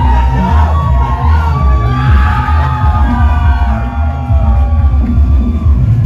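Loud live music opening a rock band's set: heavy pulsing bass under swooping, gliding pitched tones, with the crowd yelling and whooping.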